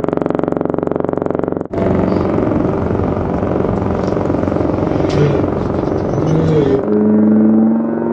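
A trombone holding one steady note, cut off suddenly under two seconds in; then traffic noise on a city street; about a second before the end a man's voice starts holding a loud steady note.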